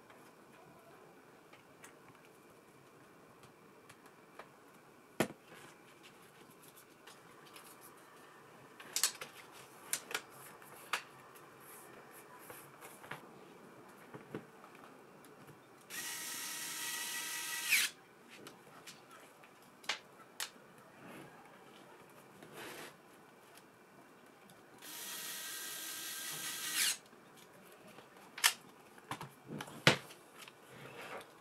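Small cordless electric screwdriver driving screws into a laptop's chassis, its motor whining steadily in two runs of about two seconds each, about nine seconds apart. Sharp clicks and taps of handling come between the runs.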